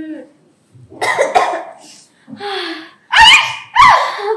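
Women coughing in several separate fits, the loudest two coughs close together near the end.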